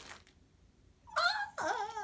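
Brief quiet, then from about a second in a girl's voice making a drawn-out, wavering whine, like a mock whimper of apology.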